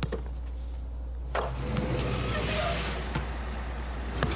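A basketball bounces once at the start. A bus then pulls up: its engine rumble comes in suddenly about a second and a half in, and there is a hiss of air brakes a little past halfway.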